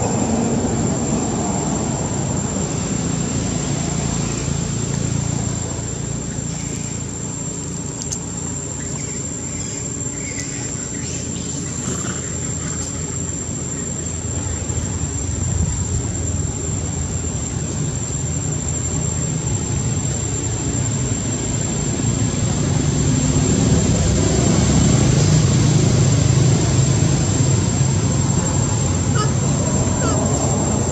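Steady low rumble with a constant high-pitched whine above it, growing louder in the last third.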